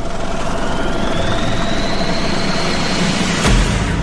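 Cinematic transition sound effect: a dense rushing whoosh with a slowly rising whine, ending in a sharp low boom about three and a half seconds in.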